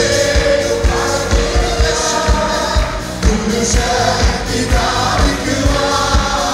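A group of men and women singing a Malayalam worship song together into microphones, over instrumental backing with a steady beat.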